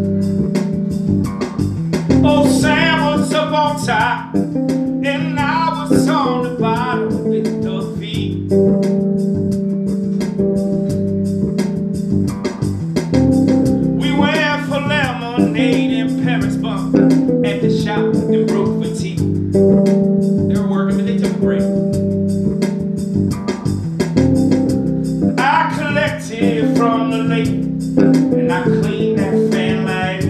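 Live electric bass guitar playing a sustained, repeating line, with a man singing long, wavering phrases over it in several separate stretches.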